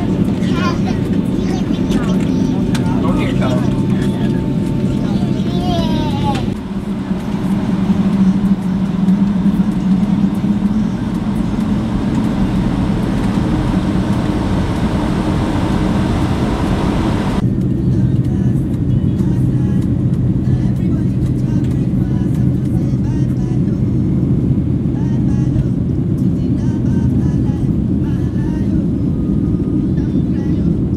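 Cabin noise inside a jet airliner: a steady, loud drone from the engines and airflow. It jumps abruptly in character about six seconds in and again about seventeen seconds in, with more hiss in the middle stretch.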